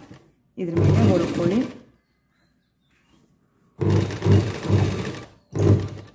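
Domestic straight-stitch sewing machine running in three short stitching bursts, stopping briefly between them.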